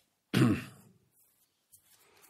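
A man clears his throat once, a short rasping burst about a third of a second in that fades within half a second.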